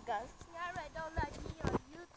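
A young child's voice making wordless vocal sounds close to the phone, broken by two sharp clicks in the second half.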